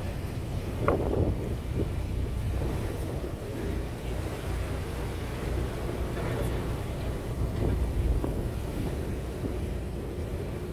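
Wind buffeting the microphone on a boat at sea, over a steady low rumble from the boat's engine and the wash of the water.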